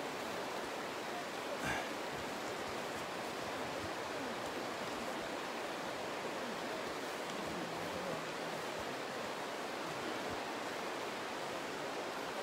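Steady, even rushing of the Tedori River flowing through the snowy gorge.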